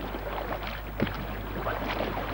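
Kayak paddles dipping and splashing in lake water, with a sharp knock about a second in, over a steady low hum.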